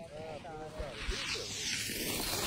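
Skis sliding over packed snow, the hiss growing louder about halfway through as the skier gathers speed, with faint voices in the first second.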